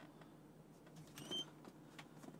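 Near silence with one brief, faint high squeak a little over a second in: leather creaking.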